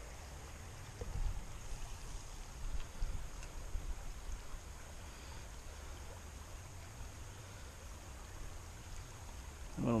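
Creekside ambience: a steady low rumble with faint flowing water, and a few soft thumps between about one and three seconds in.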